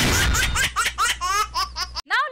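Title sting of a TV comedy show: a sudden hit, then a fast run of high-pitched, cartoon-like laughs, about seven a second, over a steady low drone.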